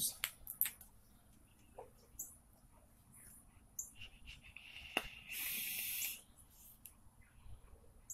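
Faint clicks, then a hiss of about a second, about five seconds in, as a vape with a rebuildable dripping atomizer is hit.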